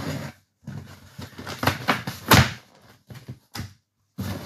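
A delivery box being opened and handled: scraping and rustling with several sharp knocks, the loudest about two seconds in, then two short clicks near the end.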